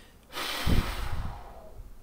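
A man's heavy, exasperated breath out, starting about a third of a second in and fading over roughly a second and a half, with a brief low voiced grunt in the middle.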